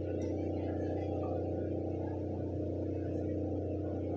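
A steady low hum made of several fixed tones that holds at an even level throughout, with no speech over it.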